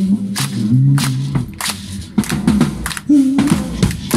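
Male voices singing a cappella, held notes rising and falling. Sharp maraca shakes and hand claps mark the beat.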